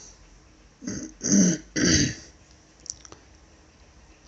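A man coughing: three coughs in quick succession, starting about a second in, followed by a few faint clicks.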